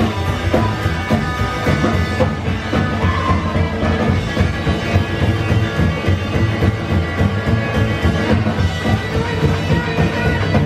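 Live rockabilly band playing: upright bass and drums keeping a steady beat under electric and acoustic guitars, with no vocals.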